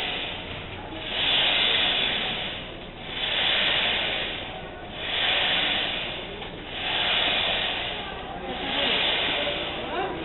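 Repeated whooshing slides of a monk's hands on a wooden prostration board during full-body prostrations, swelling and fading in a steady rhythm of about one every two seconds.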